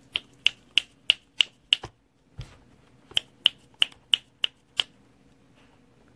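Fingers snapping in an even rhythm, about three snaps a second: six snaps, a short pause with a soft thump, then six more.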